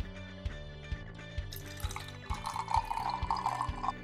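Water being poured into a glass jar, a splashing fill sound starting a little past halfway and lasting about a second and a half, over background music with a steady beat.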